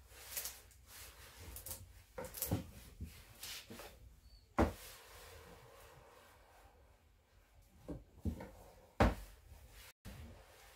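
Small iron knocking and scraping against the inside walls of a wooden table box as it is pushed into the corners to press paper down. There are scattered light knocks, with two sharper knocks, one about halfway through and one near the end.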